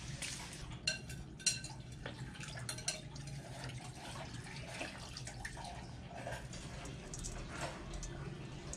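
Kitchen handling sounds of a raw whole chicken in a stainless steel bowl: scattered light clicks and taps against the steel, and liquid marinade being poured and splashing over the chicken.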